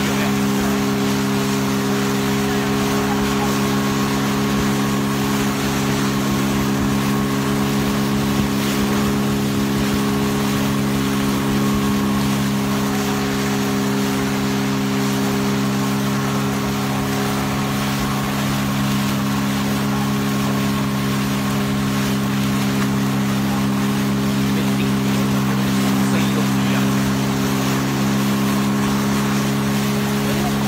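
Outboard motor of a small inflatable boat running at a steady, unchanging speed, with a constant hiss of rushing water under it.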